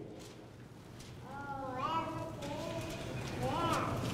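A faint, higher-pitched voice speaks softly from farther off in the room, about a second in and again near the end, in an otherwise quiet pause.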